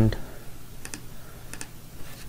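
A few faint computer keyboard keystrokes: two pairs of light clicks, about a second and a second and a half in.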